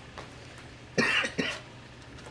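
A person coughing: a short double cough about a second in.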